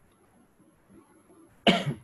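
Near silence, then a man coughs once, a short sharp cough near the end.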